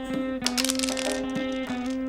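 Background music: one long held note, with a few short clicks and a brief clatter over it about half a second in.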